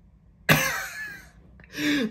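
A man's sudden burst of laughter about half a second in, lasting nearly a second, with a voice starting up again near the end.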